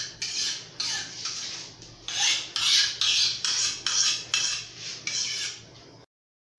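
Knife blade stroked back and forth on a wet sharpening stone, a rasping scrape about twice a second.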